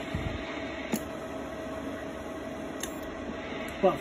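Steady whir of an electronics cooling fan with a faint steady hum, and a single sharp click about a second in.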